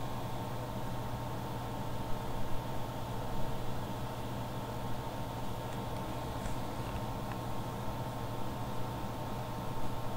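Steady electrical hum and fan-like background noise, with a few soft handling sounds from a cardboard-and-plastic flashlight package being turned in the hands, a little louder about two to three and a half seconds in.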